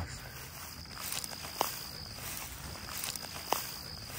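Footsteps through dry grass and weeds, a steady rustle with two sharper snaps about a second and a half and three and a half seconds in.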